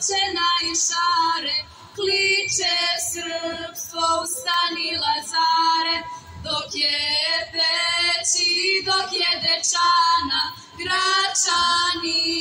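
A group of four young women singing a Serbian folk song together into a microphone, phrase by phrase, with short breath breaks about two seconds in and near the end.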